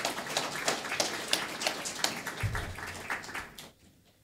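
Audience applauding, dying away shortly before the end, with a low thump about two and a half seconds in.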